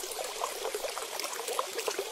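A steady trickling, water-like noise with no clear pitch.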